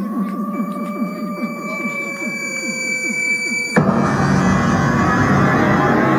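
Psychedelic trance from a live electronic set: a breakdown of held synth tones that slowly fall in pitch over repeated sweeping effects, then about four seconds in the full track comes back in abruptly, louder and denser.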